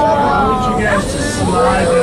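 Several people's voices talking inside the submarine cabin, over a steady low hum.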